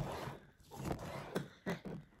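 Kitchen knife slicing boiled pork cheek on a cutting board: a few irregular knocks of the blade against the board.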